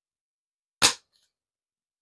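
A single short, sharp click or tap a little under a second in, with dead silence around it.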